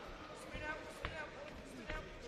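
Several dull thuds from a boxing exchange: gloved punches landing and boxers' feet on the ring canvas. The strongest comes about a second in and another near the end, under voices shouting.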